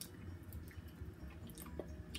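Faint, wet mouth sounds of someone chewing a bite of peach cobbler and ice cream, with a few small clicks over a low steady hum.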